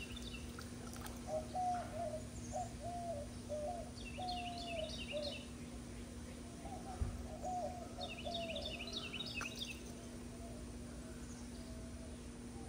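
Wild birds calling: a run of short, low hooting notes heard twice, and twice a higher, rapid chirping song, over a steady low hum.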